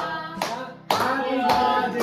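A small group clapping in time, about two claps a second, along with singing. The clapping and singing dip briefly just before a second in, then come back strongly.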